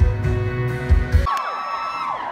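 Live band playing loud amplified music with heavy bass, which stops abruptly a little over a second in, followed by a crowd cheering.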